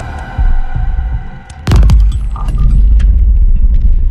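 Dark ambient background score: a low throbbing rumble under a few held tones, with a sudden loud hit about one and a half seconds in, after which the low rumble swells and stays strong.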